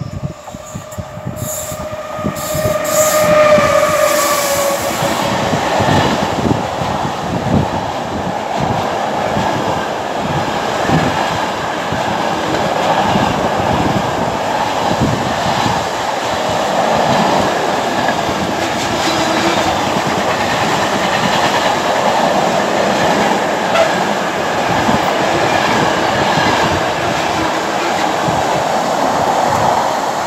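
Class 88 locomotive arriving with a long container freight train. A high tone sounds and rises slightly over the first few seconds, then gives way to the steady loud rumble and clatter of the container wagons' wheels on the rails as they pass close by.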